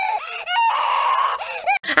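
A woman's voice putting on a doll's mock crying: short wailing cries, then a rasping drawn-out cry of about a second, then a few more short cries that stop abruptly.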